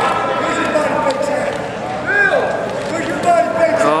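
Men's voices talking, with no other clear sound standing out.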